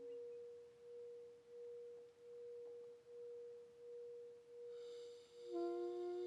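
A single quiet, nearly pure held tone, swelling and fading in a slow regular pulse, in a sparse passage of Korean traditional ensemble music. Near the end a wind instrument comes in with a lower, reedier note.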